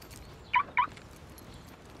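Two short high chirps about a quarter second apart from a car's remote locking as the car is locked.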